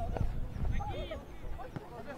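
Shouted calls from players and coaches on an outdoor football pitch, mostly in the first second, with scattered low knocks and thumps underneath.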